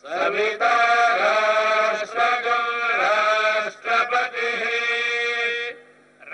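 Devotional chanting in long held tones with small pitch bends, breaking off briefly about four seconds in and again just before the end.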